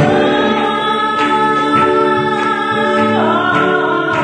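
Gospel song sung by a woman on lead vocals with a live band of piano/keyboard, electric guitar, bass guitar and drums, in long held notes that change about three seconds in.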